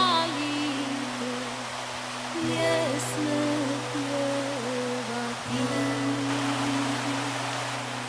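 Slow background music between sung verses of a folk song: a steady low drone, re-sounded about every three seconds, under a slow, wandering melody line.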